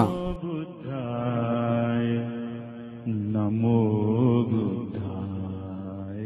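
A male voice chanting in long, held notes, in two phrases, the second starting about three seconds in. The chanting sounds dull, with no treble.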